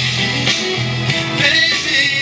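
Guitar music played back from a cassette on a Technics 614 stereo cassette deck, a recording that the deck itself has just made.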